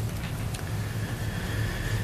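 Steady low electrical hum and hiss of a meeting-room microphone system, with a faint thin tone joining about halfway through.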